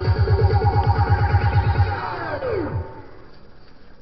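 K-pop dance track with a fast, even pulsing synth bass of about eight to nine beats a second. About two seconds in, the music slides steeply down in pitch and drops out, leaving a quieter pause just before the chorus hook.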